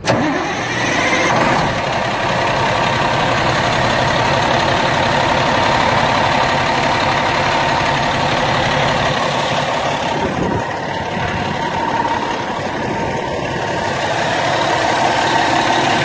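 The 2007 International 9200 truck's diesel engine, heard close up in the engine bay, fires up suddenly and settles into a steady idle within the first couple of seconds.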